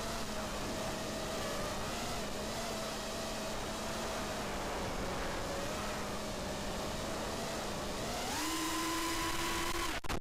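The brushless motors and 5-inch three-blade propellers of a small FPV quadcopter (Racerstar 2205 2300KV motors) hum steadily over airflow noise, with the pitch wavering slightly. About eight seconds in, the pitch steps up and the sound gets a little louder as the throttle increases.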